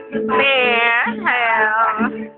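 Guitar strumming steadily underneath two long, high, wavering calls, each dropping in pitch at its end; the calls are the loudest sound.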